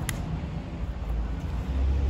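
Low, steady outdoor rumble with one brief click just after the start.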